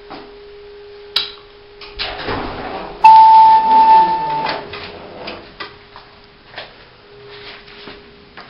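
Montgomery hydraulic elevator sounding its arrival chime: a single loud steady tone about three seconds in, lasting about a second and a half. Before and after it there is a faint steady hum from the car, and a few light clicks.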